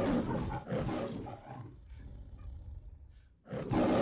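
Lion roar in the manner of the MGM logo: a long rough roar that dies away over the first two or three seconds, then a second short roar near the end.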